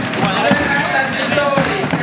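Football supporters shouting and chanting, many voices at once, with scattered sharp thuds.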